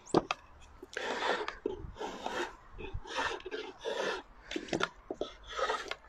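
Draw knife shaving an ash longbow stave clamped in a shaving horse, in a series of scraping strokes about one a second. The strokes take off corners and high spots to round the stave.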